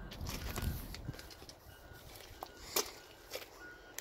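Quiet outdoor ambience with a few soft footstep clicks on gravel and short, faint high chirps repeating in the background.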